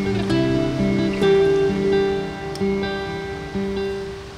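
Background music: acoustic guitar playing a slow run of held notes.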